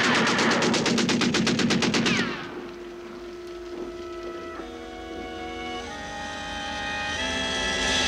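A rapid, continuous burst of machine-gun fire that cuts off suddenly about two seconds in. Quiet orchestral film music follows: held notes that step upward in pitch and slowly grow louder.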